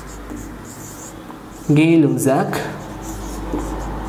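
Marker pen writing on a whiteboard, with faint scratching strokes. A short spoken word cuts in about halfway through.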